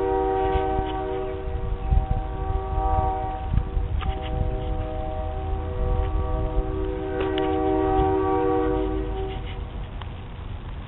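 Train horn sounding a steady multi-note chord, held almost throughout with a brief break about three and a half seconds in, and stopping just before the end; low rumble underneath.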